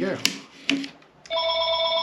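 A couple of sharp clicks as the sealed-in speaker drive unit comes free of the cabinet. Then, a little over a second in, a telephone starts ringing with a steady tone.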